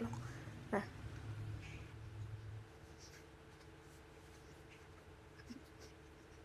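Quiet room tone with a low hum that stops about two and a half seconds in, and one short faint click about a second in.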